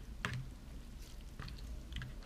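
Plastic fork stirring soft, wet ramen noodles in a plastic microwave bowl: faint squishing, with a few light clicks.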